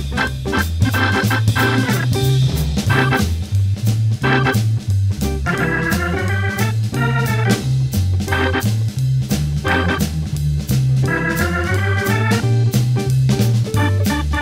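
Hammond B3 tonewheel organ playing a swinging jazz blues over a steady walking bass line, with drums keeping time. Sustained organ chords ring out about six seconds in and again near the end.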